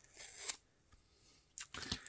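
An adhesive paper sticker being peeled off a RAM stick, a short tearing rasp about half a second in, then light clicks and rustles of the circuit-board sticks being handled near the end.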